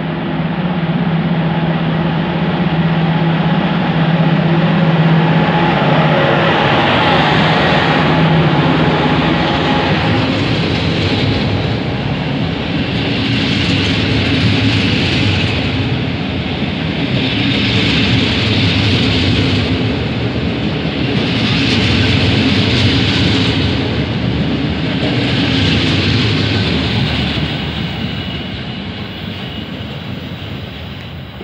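An electric locomotive hauling double-deck passenger coaches passes slowly close by. The locomotive's steady hum gives way to a wheel rumble that swells about every four seconds as each coach goes by. The sound fades near the end as the train draws away.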